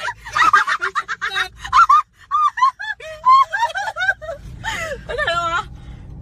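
High-pitched laughter: a fast run of short rising-and-falling giggles, breaking off for a moment about two seconds in, with a longer wavering squeal near the end.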